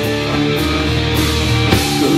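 Live rock band playing loud: electric guitars over bass and drums, with a sharp drum or cymbal hit about every half second.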